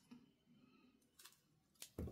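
Near silence, with faint hand handling of paper on a cutting mat: a soft rustle just past halfway and a sharp click near the end.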